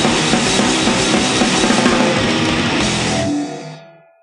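Swedish kängpunk (d-beat punk) band recording: drums, distorted guitars and bass playing loud and dense, then the song ends about three seconds in and the last chord dies away.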